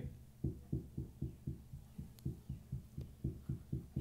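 A quick, regular series of soft, muffled low thumps, about four a second.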